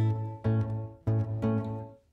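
Acoustic guitar strummed: the closing chords of a song, struck about three times and left to ring, dying away near the end.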